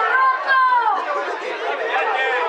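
Many voices talking and calling out at once, overlapping into indistinct chatter, from spectators and players at a football match.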